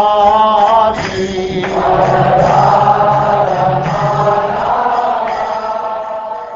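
Devotional chant sung in long held, wavering notes, easing off at the end.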